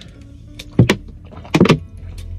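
A person drinking from a plastic bottle of mineral water: two short swallows, about a second in and again most of a second later.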